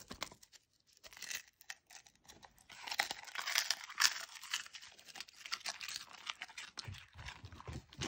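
Goldendoodle biting and chewing a crispy capelin, a run of sharp crackling crunches. The crunching is thickest from about three to five seconds in, with scattered crunches before and after.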